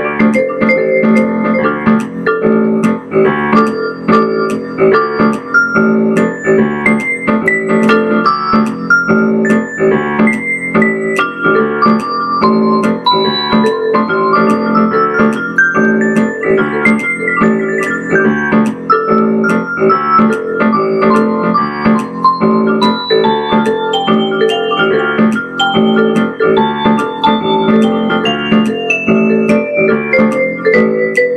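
Instrumental piano or electric keyboard music: a quick, even stream of notes with a melody stepping up and down over a steadily repeated low note.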